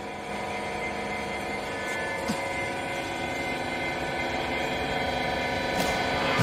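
Steady electric hum of a baling machine's hydraulic power unit running, a constant drone made of several steady tones.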